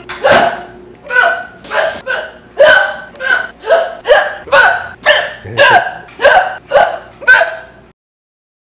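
A woman hiccuping loudly and repeatedly: a steady run of sharp voiced "hic" sounds, nearly two a second, stopping just before the end.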